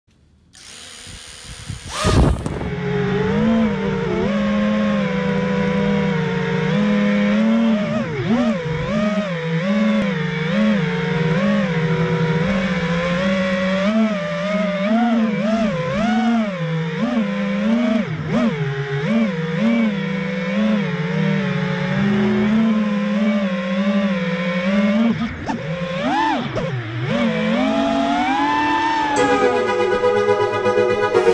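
FPV freestyle quadcopter's brushless motors whining, the pitch wavering up and down continually with the throttle, after a loud burst about two seconds in. Electronic music comes in near the end.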